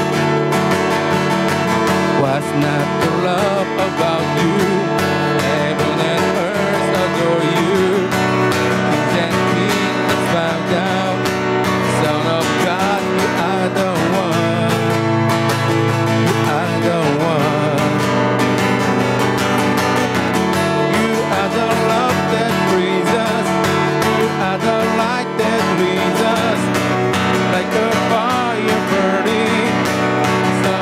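A worship song played live: strummed acoustic guitar with a man singing the melody.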